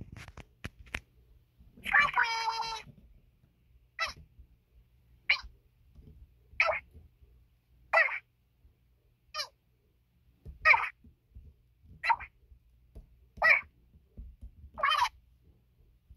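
A high-pitched, squeaky voice giving short cries at an even pace, about ten in all, one every second and a half or so; the first is longer than the rest.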